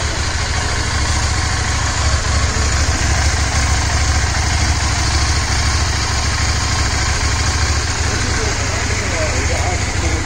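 CFMOTO 800MT's 799cc parallel-twin engine idling steadily, a constant low hum with no revving.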